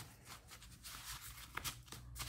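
Faint rustling and light taps of paper cards and envelopes being handled and moved about on a table.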